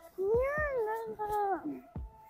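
A child's high-pitched, drawn-out vocal call, rising and then falling, followed by a shorter falling call.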